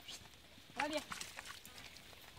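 A single short voice sound, a brief exclamation with a bending pitch, about a second in, over faint scattered scuffs of steps on a dirt path.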